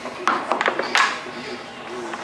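Small wooden balls rolling down a ball-maze wall of tilted plastic ramps, giving a few sharp knocks as they strike the ramps and drop into the bin below, with voices in the background.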